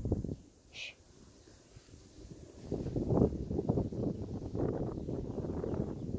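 Wind buffeting the phone's microphone: an irregular low rumble that starts about three seconds in, after a quieter stretch broken by one brief high chirp about a second in.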